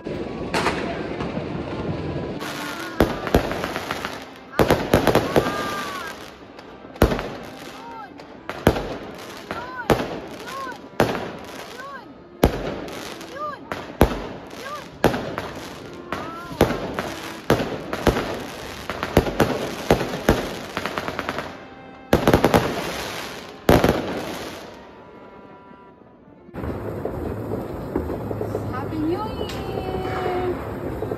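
Aerial fireworks going off overhead: a long run of loud bangs and crackles at irregular intervals, stopping about 24 seconds in.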